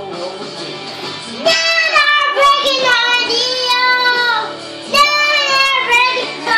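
A young child singing loudly along to a recorded song with guitar backing. The music plays alone at first, and the high sung voice comes in about a second and a half in, pauses briefly just before five seconds, then resumes.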